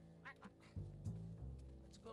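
Background music with a steady low bass line. About a quarter second in come a few short, squeaky high yelps from an excited schnauzer in the car.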